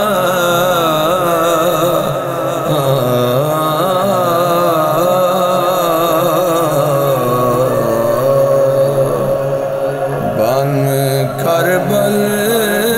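Voices chanting a wordless nauha (Shia lament) opening in long, drawn-out notes that waver slowly in pitch, with a slide in pitch near the end.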